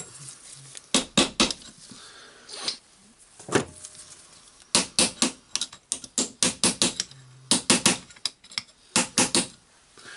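Sharp metallic clicks and knocks of hand tools and rotary-hammer parts being handled and set down on a workbench: a few scattered taps, then quick clusters of clinks in the second half.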